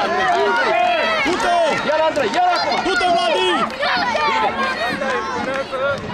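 Many children shouting and calling over one another at once, high voices overlapping without a break.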